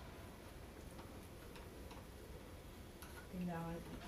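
Faint, irregular small clicks of a screwdriver working a mounting screw on a tubular lever lockset. A person's voice is heard briefly near the end.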